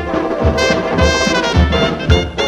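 Dixieland jazz band playing an instrumental passage, trumpet and trombone out front over a steady beat of about two thumps a second, with a rising brass line about half a second in.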